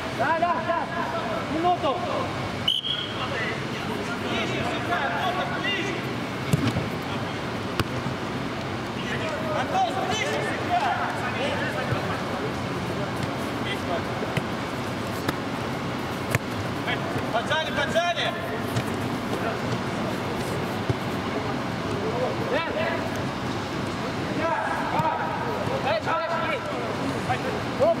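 Players' scattered shouts and calls during an indoor football game, with the thuds of the ball being kicked, inside a large air-supported sports dome.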